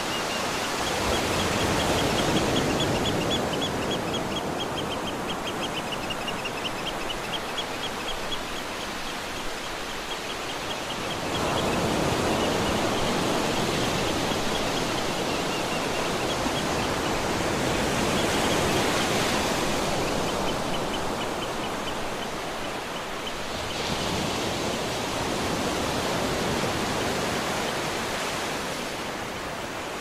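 Sea surf breaking and washing up a beach: a steady rush of foam that swells louder every few seconds as each wave comes in. A faint, rapid, high chirping runs in the background for much of the time and fades out near the end.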